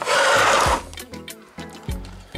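Handling noise as a plastic-bodied RC trail truck is turned over on a cutting mat: a scrape lasting under a second, then two soft knocks.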